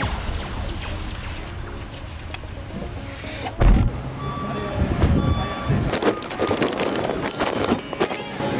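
Outdoor wind and camera-handling noise rumbling on the microphone, with one loud bump about three and a half seconds in, under faint background music.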